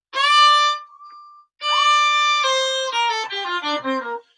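Bowed violin through a Boss ME-80 pedal with its upper-octave effect blended in: a held note, a second held note about a second and a half in, then a run of shorter notes stepping downward.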